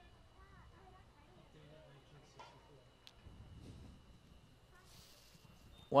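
Quiet ballpark ambience: faint, scattered distant voices with low background hum, and a man's voice starting right at the end.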